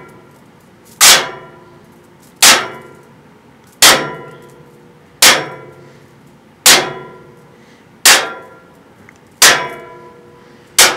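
A metallic clang struck seven times at an even pace, about one every 1.4 seconds, each hit ringing and then fading away.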